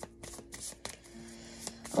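Tarot cards being shuffled by hand: a quick, irregular run of soft clicks and flicks.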